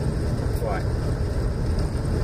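Steady low rumble of a Jeep driving slowly on a snow-covered road, heard inside the cabin.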